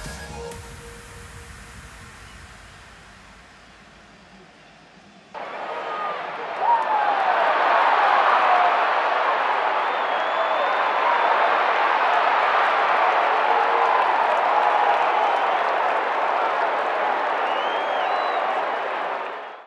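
The music stops within the first second and fades away. About five seconds in, a loud crowd cheering and applauding starts suddenly and carries on steadily, like a stadium crowd.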